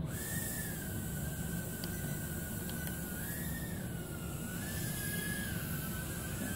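JJRC H36 micro quadcopter's small motors and propellers whining in flight, the pitch stepping up and down several times as the throttle changes.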